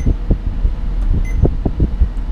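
Dash air conditioning blowing hard, its airflow buffeting the microphone in uneven low thumps over a steady low hum.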